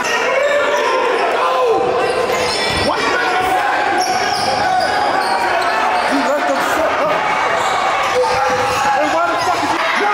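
Game sound in an echoing gym: a basketball dribbled on the hardwood court, sneakers squeaking, and players and spectators calling out.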